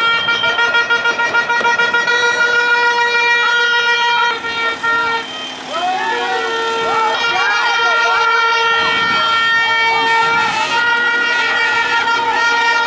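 Protesters' horns sounding long, steady blasts, one held for most of the time with a second, lower horn joining in the middle, while voices shout over them.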